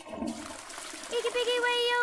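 A sudden rush of water-like noise, like a flush, and about a second in a held sung note joins it.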